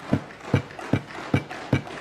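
Desk thumping: hands banging on wooden desks in a steady rhythm, about two and a half knocks a second.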